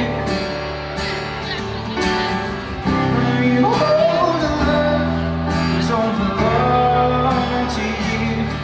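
A live band playing keyboard and guitar, with a man singing long, sliding notes through the second half.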